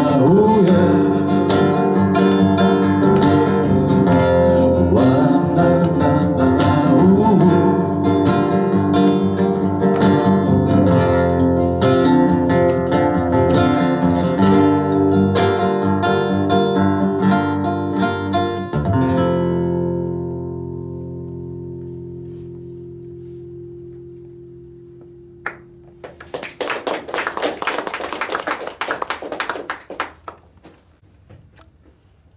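Acoustic guitar playing that ends on a final chord, which rings out and fades over several seconds. Near the end, a few seconds of applause from a small audience.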